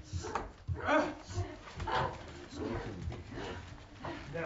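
A woman's voice in short, strained cries and gasps, coming in bursts, with no words.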